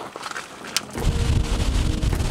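A pontoon boat's outboard motor running under way, with wind buffeting the microphone, coming in suddenly about halfway through. Before it there is a quieter stretch with one sharp click.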